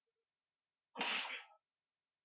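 A single short, breathy burst from a person, about a second in and lasting about half a second.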